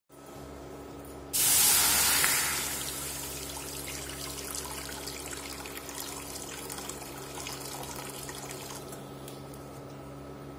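Water poured into an empty stainless-steel kadai, beginning with a loud splash on the bare metal about a second in, then settling into a steady, softer pour as the pan fills and tapering off near the end. A steady hum from the induction cooktop runs underneath.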